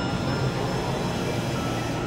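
Experimental electronic noise music: a dense, steady synthesizer drone with grainy noise filling the low and middle range and a few thin held high tones over it.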